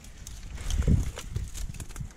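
Dry twigs and brush rustling and crackling underfoot, with irregular footsteps and snapping of small sticks.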